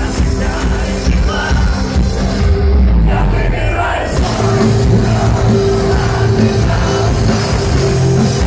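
Loud live metal concert in a large hall, heard through a phone: a bass-heavy electronic intro whose high end drops away about two and a half seconds in, giving way at about four seconds to steady held notes as the band comes in, with the crowd shouting over it.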